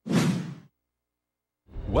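A swoosh sound effect from a TV news logo transition, lasting well under a second, followed by dead silence. Near the end the next segment's audio rises in.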